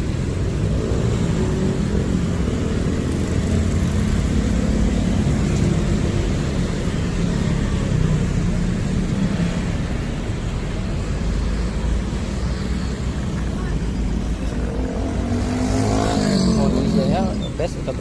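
Busy road traffic at close range: motorcycles, cars and buses passing with a steady engine rumble. Near the end a louder pitched sound rises and falls.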